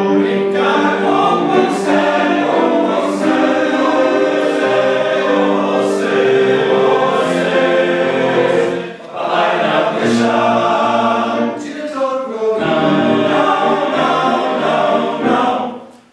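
A men's choir (tenors and basses) singing a contemporary piece in sustained, close-voiced chords, with brief lulls about nine and twelve seconds in.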